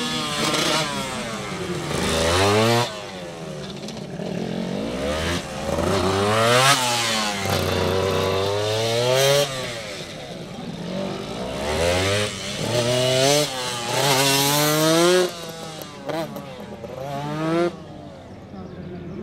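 Honda NSR250R's two-stroke V-twin revving hard in short bursts, climbing in pitch and then shutting off, over and over, as the bike accelerates and brakes between tight turns.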